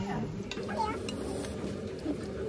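Indistinct voices and murmur in a small restaurant dining room, with a light clink of tableware about half a second in.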